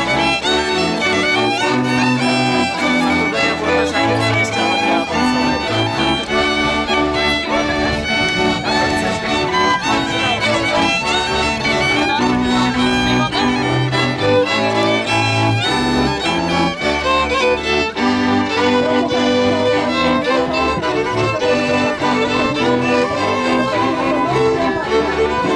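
Background music, loud and continuous, with sustained melody notes over a moving bass line.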